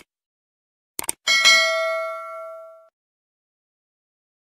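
Subscribe-button animation sound effects: a quick double click about a second in, then a bright notification-bell ding that rings and fades over about a second and a half.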